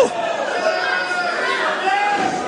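Wrestling crowd in a hall, many voices talking and calling out at once, with one short shout right at the start.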